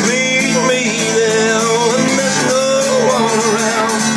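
Steel-string acoustic guitar strummed steadily in a country-blues rhythm, with a man's voice singing long, wavering held notes over it.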